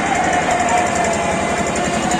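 An engine running with a rapid, even beat, and a single long held voice note over it that fades out about one and a half seconds in.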